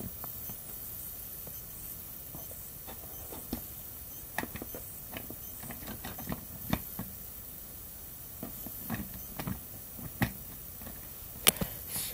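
Scattered light clicks and knocks of plastic toy trains and toy track being handled, as toy engines are set back on the rails.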